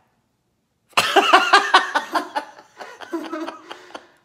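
Hearty human laughter in quick, choppy bursts, starting suddenly about a second in after a moment of dead silence.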